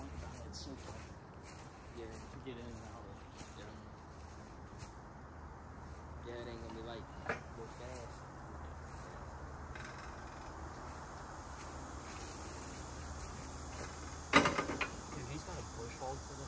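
Faint voices over a steady low hum, then near the end one loud metallic clank with a short ring as a heavy steel implement is brought onto the compact tractor's rear hitch.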